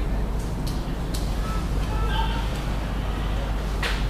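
Steady low hum of the room and recording under faint, indistinct speech, with a few sharp clicks; the loudest click comes near the end.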